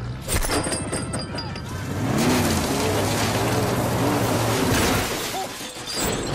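A pickup truck straining against a chain, its engine running hard, with a sharp crack about a third of a second in and a long, loud stretch of crashing and tearing metal in the middle as the truck's rear end is ripped away, over film music.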